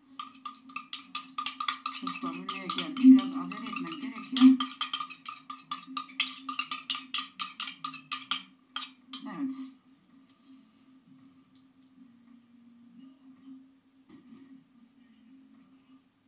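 A metal spoon scraping and clicking against a ceramic bowl, rapid sharp clicks several times a second, as thick sauce is worked out of it; after about ten seconds it falls to faint, soft scraping of the spoon on the plate. A steady low hum runs underneath.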